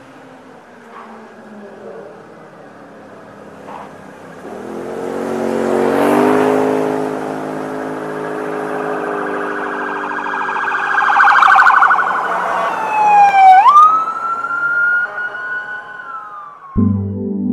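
A vehicle engine growing louder about five seconds in, followed by a police siren that swoops down and sharply back up near the end, then holds a high steady tone.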